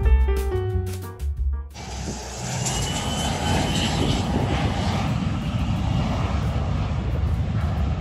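Background music with piano, cut off abruptly about two seconds in. Then the turbofan engines of an Embraer Legacy 600 business jet climbing away on a go-around: steady jet noise with a faint high whine.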